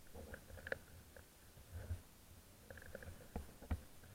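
Skis running over groomed snow: a faint, uneven low rumble broken by several sharp knocks, the loudest near the end.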